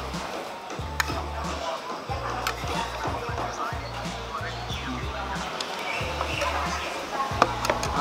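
Background music with a steady low bass line, over a few sharp clicks of a metal spoon against a plate as food is eaten.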